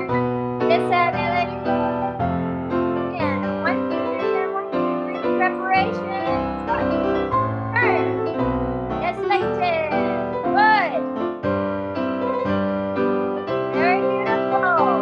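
Live piano accompaniment for a ballet class exercise, played in a steady dance rhythm and heard over a video-call connection. A few brief sliding, warbling tones rise and fall over the piano now and then.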